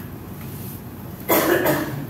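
A person coughing: two quick coughs close together, a little over a second in.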